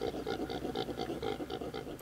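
Male impala's rutting call: a rapid, even series of grunts, about five a second.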